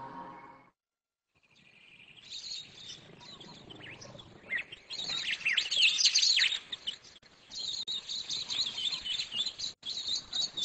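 Birds chirping: many quick, high calls that come in after a short silence about a second and a half in, thickest around the middle.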